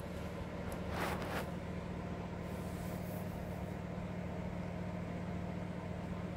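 Steady low mechanical hum with a faint steady tone, with a brief soft rush about a second in.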